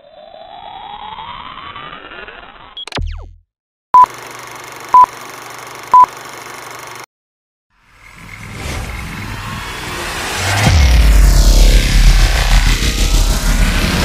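Intro sound effects: a gliding pitch sweep, then three short beeps a second apart over a steady hiss, then after a brief gap a whoosh that swells into a loud low rumble with sweeps rising and falling through it.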